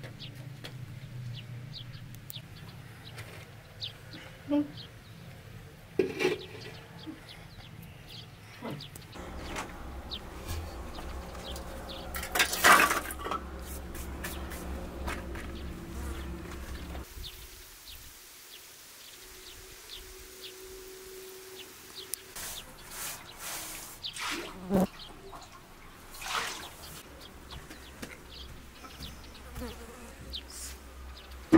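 A fly buzzing close by, with scattered knocks and clatter of household handling; the loudest clatter comes about twelve seconds in.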